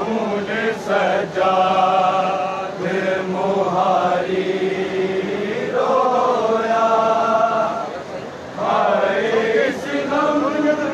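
Men's voices chanting a noha, a Shia mourning lament, in long drawn-out sung phrases over a steady low hum, with a short break in the singing a little after the middle.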